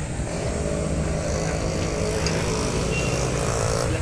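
A motor vehicle running steadily: an even, low engine hum with road noise.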